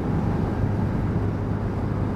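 Lexmoto Diablo 125cc scooter engine running steadily at cruising speed, with road and wind rush picked up by a helmet-mounted camera; a constant low hum under an even noise.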